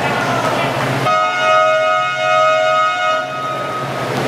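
A gym's electric game horn sounding one steady, flat blast of about two seconds, starting suddenly about a second in, over crowd chatter in the hall.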